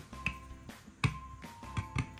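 Background music: soft held notes over a finger-snap beat, about one snap every three-quarters of a second.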